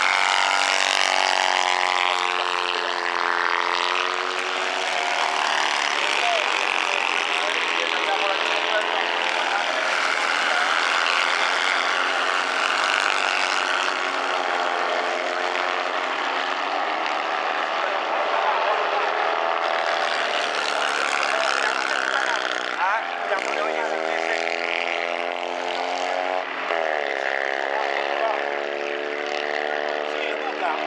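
Engines of several small off-road racing buggies revving hard around a dirt track, their pitch rising and falling as they accelerate and shift. The note drops sharply and climbs again twice near the end.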